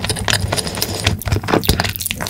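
Close-miked chewing and biting of a chocolate-coated Choco Pie: a quick run of sticky mouth clicks and smacks, over a steady low hum.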